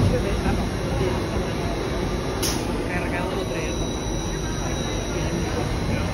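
Small roller coaster train of The Barnstormer rolling along its track into the station with a steady low rumble, and one sharp clack about two and a half seconds in.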